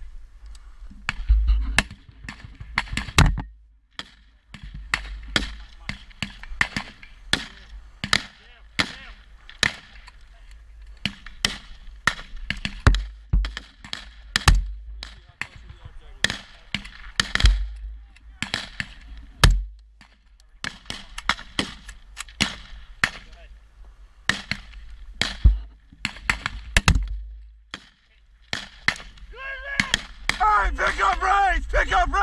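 Small-arms and machine-gun fire: many sharp shots in irregular bursts, some single and some in quick runs, with no long pause.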